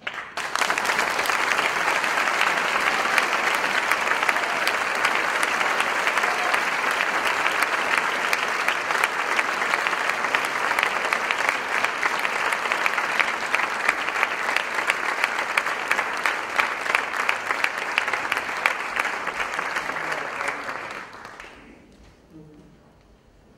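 Large audience applauding: the clapping starts suddenly, holds steady and dense, then dies away shortly before the end.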